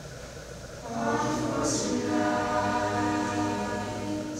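Mixed choir of boys' and girls' voices singing unaccompanied. After a quiet breath, the choir comes in about a second in with held chords, a soft 's' consonant passing through them.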